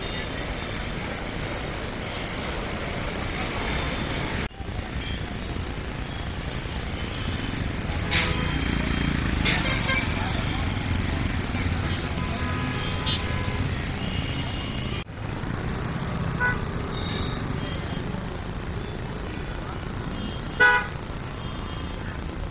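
Street traffic with a low, steady rumble, broken by short vehicle horn toots about eight and nine and a half seconds in and again near the end, with voices in the background.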